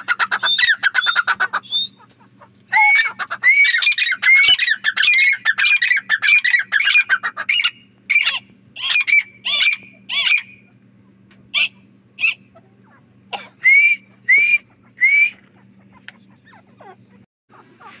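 Grey francolins (teetar) calling. A rapid run of calls comes first, then a long dense burst of overlapping call notes, then slower spaced calls that thin out after about ten seconds and stop some way before the end. A low steady hum runs underneath.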